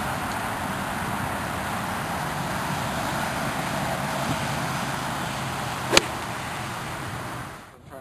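Steady rushing outdoor background noise, like distant road traffic, with one sharp click about six seconds in.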